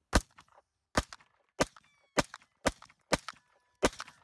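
Walther PPX semi-automatic pistol fired seven times in quick succession, about one shot every half to three-quarters of a second, each shot followed by a short echo.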